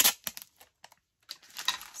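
A few handling clicks at the start, then clear packing tape peeling off the roll in a short noisy strip of sound during the last half second.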